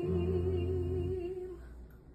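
The end of a song: a final held note with a slight vibrato over a low bass note, fading out about a second and a half in.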